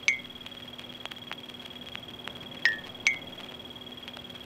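Faint steady electronic hum with short, sharp high chirps: one just after the start and a pair about half a second apart near the end.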